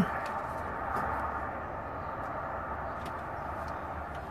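Steady outdoor background noise, a low rumble under an even hiss, with a few faint short clicks.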